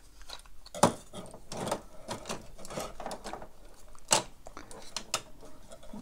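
Hard plastic toy parts clicking and tapping as 3D-printed armour pieces are handled and fitted onto a transforming robot figure. Sharper clicks come about a second in and again about four seconds in.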